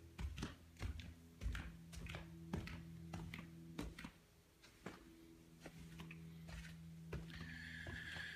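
Soft footsteps climbing carpeted stairs, muffled thuds about two a second, over a faint steady hum.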